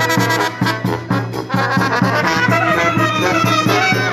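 A fanfara brass band playing: trumpets, tubas and a baritone horn in sustained melody lines over a steady bass-drum-and-cymbal beat.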